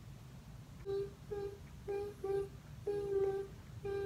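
A person humming a short tune with closed lips: a run of notes on nearly one pitch starting about a second in, four short ones and then two longer held ones.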